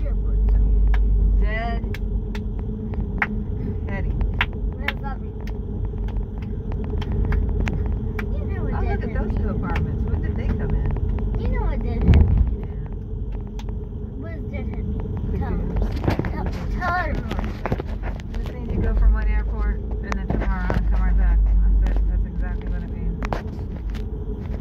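Steady low rumble of a car's engine and tyres heard inside the cabin while driving, with voices talking now and then over it.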